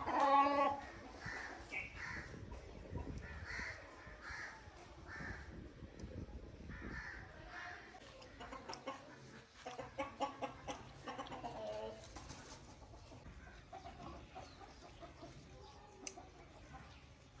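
Chickens clucking on and off, with a louder call right at the start.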